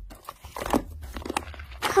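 Hands squeezing and pressing slime, giving irregular small sticky clicks and crackles.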